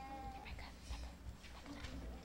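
Low murmur of children's voices, with a brief high-pitched child's voice near the start.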